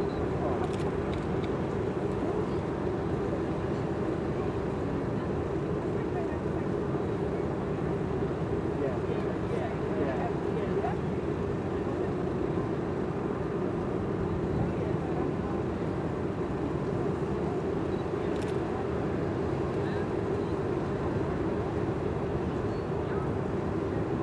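Steady hum of ship machinery, heard on an open deck, with faint indistinct voices now and then.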